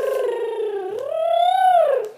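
A child's voice holding a long, wavering sung note with no words. It sinks slowly at first, then swells upward about halfway through and falls back.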